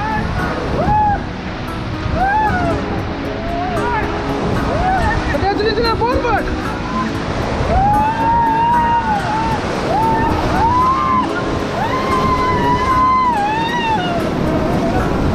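White-water rapids rushing and splashing around an inflatable raft, with the rafters yelling and whooping over the water again and again, some yells held for a second or so.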